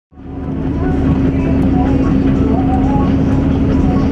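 Combine harvester running as it cuts rice, heard from inside the cab: a loud, steady engine drone with a constant hum, fading in over the first half second.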